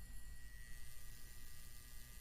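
Faint, steady low electrical hum with light hiss and a thin, steady high tone above it.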